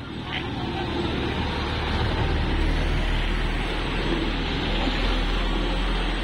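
Toyota Hilux Conquest pickup's diesel engine running close by as the crashed truck is moved: a steady low rumble that builds over the first two seconds and then holds.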